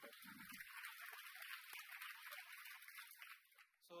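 Audience applauding: a faint, dense patter of many hands clapping that fades out about three and a half seconds in, with a brief laugh from a man near the start.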